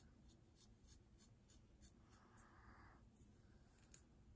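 Comb scratching through hair and against the scalp close to the microphone: quiet, short scratchy strokes about three a second, with one longer rubbing stroke about two seconds in.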